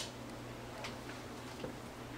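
Faint handling noise as clothes are sorted by hand: a sharp click at the start and a couple of softer clicks and rustles later, over a steady low hum.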